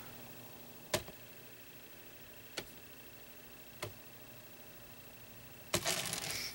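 Quiet room tone with a faint steady hum, broken by four short sharp clicks, the last one near the end louder than the rest.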